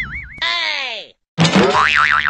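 Added cartoon sound effects: a wobbling boing, then a long falling slide in pitch, a brief gap, and a sudden crash about one and a half seconds in followed by another wobbling boing.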